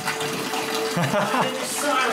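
Liquid running and splashing, with a man's voice briefly in the middle.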